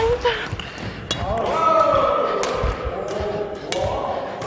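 Badminton rackets striking shuttlecocks in a fast push drill, sharp hits about a second apart, with squeaks of shoes on a wooden court floor.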